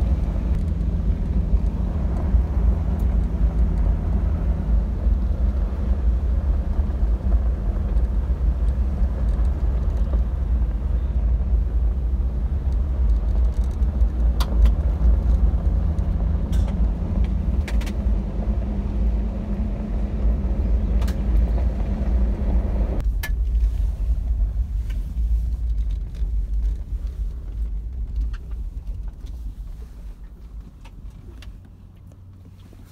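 A vehicle driving on a gravel road, heard from inside the cab: a steady low rumble of tyres and engine with a few sharp clicks of loose gravel. About three-quarters through, the higher road noise cuts off suddenly and the rumble then fades away.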